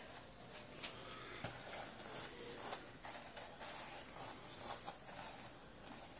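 A freshly fried potato doughnut being tossed in granulated sugar in a stainless steel bowl: soft, irregular gritty rustles and light taps against the metal.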